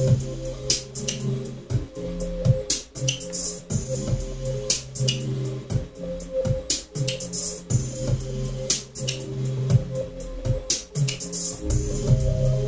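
Electronic beat: drum-machine hits in a steady rhythm over a repeating bass line and held synth notes, played live from a grid pad controller.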